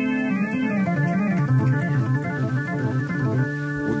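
Live band music led by an electric organ: sustained organ chords with a bass line moving up and down beneath them, recorded off an FM broadcast onto cassette.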